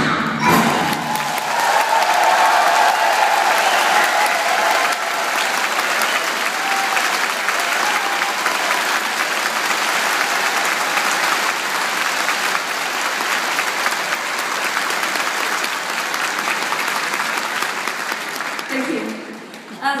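Concert audience applauding after a song ends, a long round of clapping that dies away near the end.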